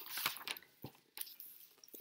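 Paper rustling and handling noise as a spiral-bound lesson book is picked up and held open, with a couple of short light knocks about a second in.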